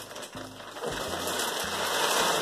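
Thin clear plastic bag crinkling and rustling as a rolled rug is pulled out of it, louder from about a second in, over background music with a low bass line.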